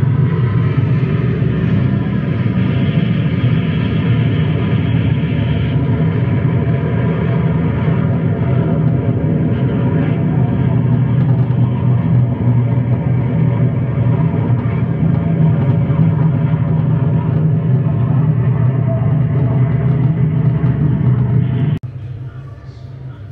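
A loud, steady, low mechanical drone made of many layered tones, like engines running, played as an exhibit's sound effect. It cuts off abruptly near the end.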